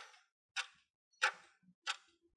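Stopwatch ticking sound effect counting down the time to answer a quiz question: sharp, evenly spaced ticks, about one every two-thirds of a second.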